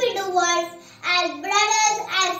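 A young girl's voice reciting a speech in English, with a few long, drawn-out syllables and a short pause about a second in.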